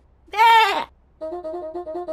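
A cartoon lamb's single short, wavering bleat about a third of a second in, the loudest sound here. From just after a second in, a quick run of short repeated musical notes follows, about five a second.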